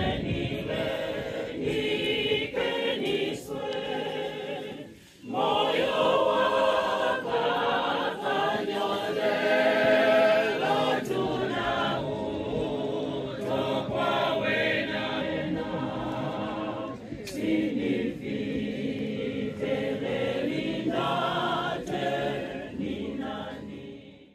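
A group of voices singing together without accompaniment, with a short break about five seconds in.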